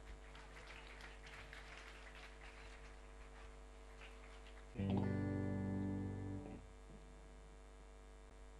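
Faint hall murmur with small clicks and rustles. About five seconds in, a single amplified chord sounds from the stage, held for about a second and a half and then stopped: a band checking its instruments before it starts to play.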